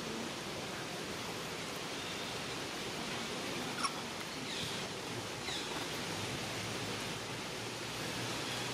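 Steady outdoor background hiss with a faint click about four seconds in and a couple of faint, brief high chirps near the middle.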